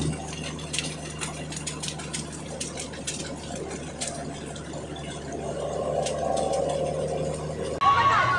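Steady low drone of engine and road noise from a vehicle travelling at highway speed beside a large semi-trailer truck, with scattered light clicks. A higher hum grows louder over the last few seconds, then everything cuts off suddenly.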